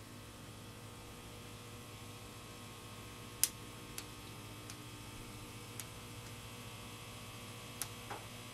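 Steady low electrical mains hum in a quiet room, with a few light clicks from a metal sculpting tool working on plasticine clay. The sharpest click comes about three and a half seconds in.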